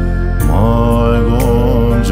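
Bhutanese Buddhist prayer song (choeyang): a voice singing a slow Dzongkha phrase over a steady low drone, with a new phrase beginning about half a second in.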